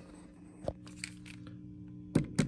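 Steady low electrical hum from a plugged-in guitar amplifier, with one short light knock about two-thirds of a second in and a couple of fainter ticks.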